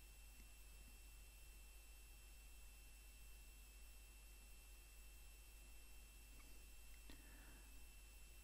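Near silence: faint steady hiss and hum of the recording's background noise.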